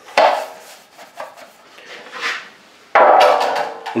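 A brush dipped into a container of thinned drywall mud knocking twice against the container, once just after the start and again about three seconds in, each knock ringing briefly, with a soft scrape between them.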